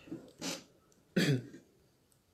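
A man clearing his throat: a short breathy rasp, then a louder voiced one just past a second in.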